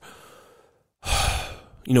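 A man's audible in-breath about a second in, coming after a moment of dead silence and just before he speaks again.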